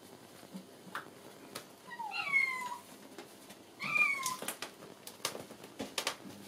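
A kitten meowing twice, two short calls that each fall in pitch, about two and four seconds in. Light taps and knocks sound around the calls.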